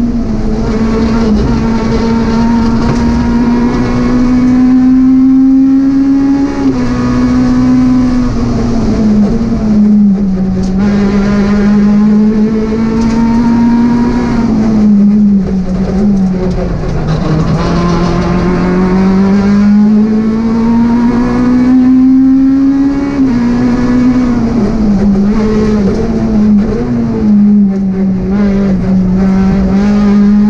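Peugeot 208 R2 rally car's 1.6-litre four-cylinder engine heard from inside the cabin, driven hard on a stage. The engine note climbs steadily and drops sharply at each upshift, several times, and falls away under braking a couple of times before pulling up again.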